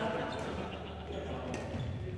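Badminton hall ambience: voices from around the hall, with two faint sharp hits of rackets on shuttlecocks, one about half a second in and one about a second and a half in.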